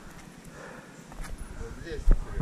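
Low, uneven wind rumble on the microphone with a few faint clicks; a voice begins faintly near the end.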